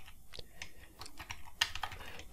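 Computer keyboard typing: an irregular run of quick key clicks.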